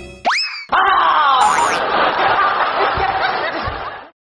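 A cartoon 'boing' sound effect rising quickly in pitch, then a loud, dense comic sound effect lasting about three seconds with a brief high whistle-like glide in it, cutting off abruptly at the end.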